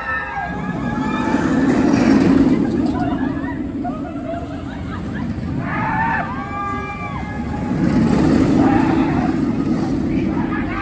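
Steel roller coaster train running along its track, the rumble swelling twice, with people's voices and shouts over it.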